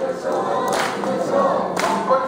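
Akita Kanto festival hayashi: a group chanting "dokkoisho" over held pipe-like notes, with sharp drum strikes about once a second.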